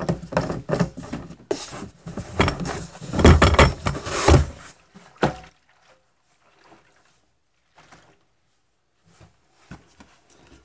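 Knocks, clunks and rubbing of a red plastic gas can being handled close by. The sounds are loudest just before halfway, end with a single knock, and the rest is near silence with a few faint ticks.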